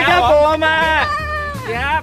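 A high, sing-song voice sliding up and down in pitch through a drawn-out spoken greeting, over background music.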